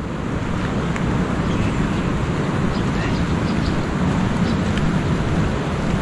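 Steady rushing outdoor noise: wind on the microphone together with surf from the nearby shore.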